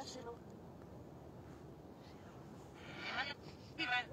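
Two short, high voice-like sounds over faint background hiss: one lasting about half a second around three seconds in, and a shorter one at the very end.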